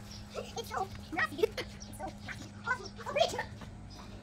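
Short bursts of voice, unclear speech or calls, coming in clusters, over a steady low hum.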